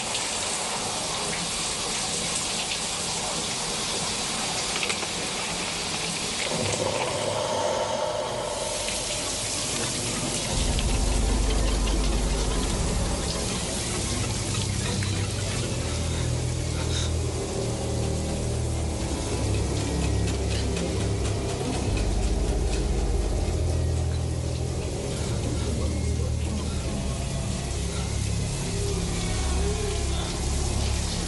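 Shower water spraying steadily. About ten seconds in, a low droning music score joins it and runs underneath.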